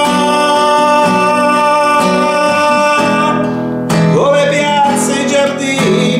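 A man singing in Italian, holding one long note, over a strummed nylon-string classical guitar. Just before four seconds in the note breaks off and a new sung phrase starts with a rising slide, the strumming carrying on.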